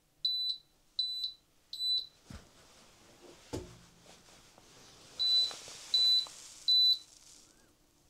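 A 12 V power inverter's alarm beeping in two sets of three short, high beeps, with a couple of soft knocks between the sets. It is the low-battery fault warning: the battery has been drained down to the inverter's 10.5 V cutoff, and the inverter has shut off its output.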